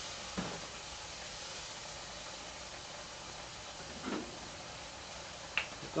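Pork belly and sauce sizzling steadily in a wok over a gas flame, with a few faint clicks.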